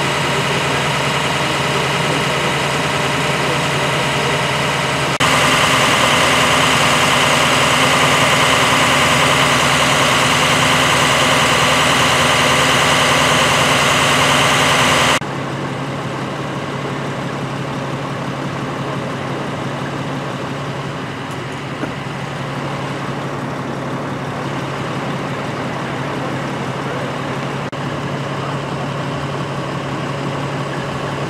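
Idling engines of emergency vehicles, a fire-department ambulance and fire engine, making a steady hum. The sound jumps abruptly louder about five seconds in and drops back about fifteen seconds in.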